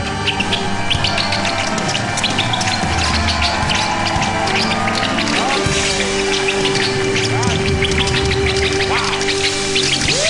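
A live band plays fanfare-style music, with a held note through the second half. Many short, high chirps and squeaks sound over it as the winged rat puppet flies.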